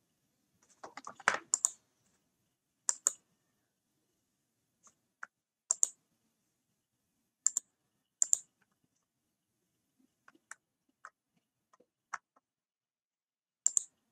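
Sparse clicking at a computer: short, sharp clicks, singly and in pairs, every second or two.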